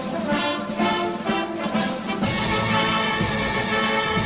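Instrumental opening of a recorded anthem: held notes, with a fuller, deeper accompaniment coming in about two seconds in.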